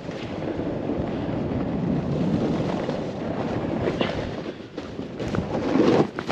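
Snowboard sliding and scraping over soft, chopped-up snow: a steady rushing scrape that swells around two seconds in and again near the end.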